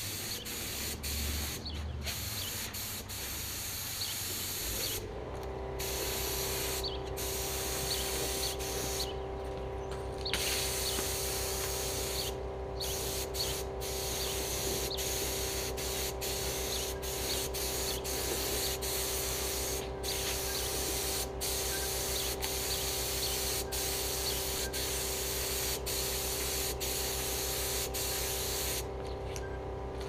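HVLP spray gun hissing as paint is sprayed on in passes, with short breaks where the trigger is let go. About five seconds in, a steady motor hum starts underneath: the air compressor kicking on.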